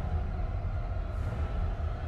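A low, steady rumbling drone with a few faint held tones above it, typical of a dark dramatic underscore.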